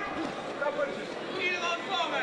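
Indistinct voices and chatter from the crowd around a boxing ring, with someone calling out near the end.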